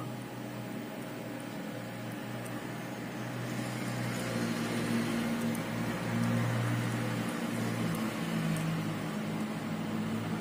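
A steady low mechanical hum with a few held tones, growing a little louder about halfway through and easing off toward the end.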